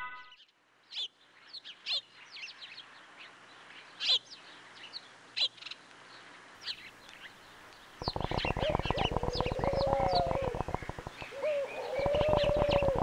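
Birds chirping and calling, a nature-ambience sound effect: sparse short high chirps at first. From about two-thirds of the way in, it turns louder and busier, with a fast rattling trill under lower, wavering calls.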